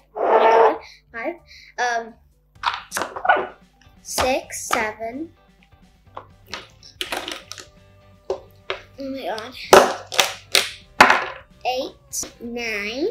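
A girl's voice counting aloud, with a few knocks of silicone pop-it fidget toys being set down on a stack.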